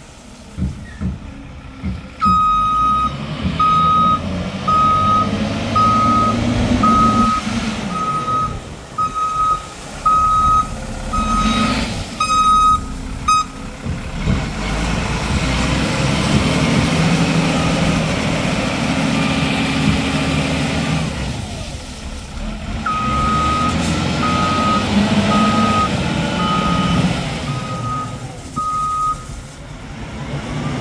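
Svetruck 1260-30 heavy diesel forklift manoeuvring, its engine running and picking up in the middle, with its reversing alarm beeping at a steady single pitch in two runs: from about two seconds in to about thirteen, and again from about twenty-three seconds to near the end.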